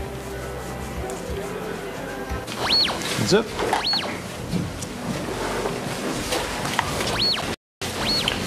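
Handheld security metal-detector wand giving short rising-and-falling electronic whoops, three in all: two about a second apart a few seconds in and one more near the end, over background music.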